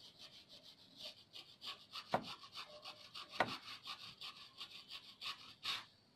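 A rubber eraser rubbed quickly back and forth along the gold contact edge of a desktop RAM stick, about three or four short scraping strokes a second, to clean off the carbon build-up blamed for the computer powering on with no display. Two sharper knocks stand out about two and three and a half seconds in.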